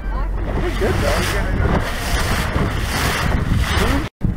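Wind buffeting the microphone over a motorboat's engine running steadily, with water rushing past the moving boat.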